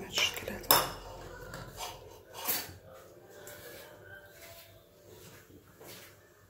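Metal spoon clinking against a ceramic bowl: a couple of sharp clinks in the first second, the second the loudest, and another about two and a half seconds in.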